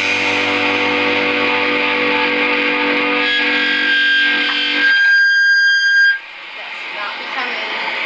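A small rock band with distorted electric guitar and bass holds its final chord, ringing. About five seconds in the low end drops away, leaving a single high steady tone that cuts off abruptly about a second later, followed by a quieter stretch.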